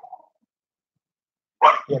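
A dog's short vocalization near the end, after more than a second of silence.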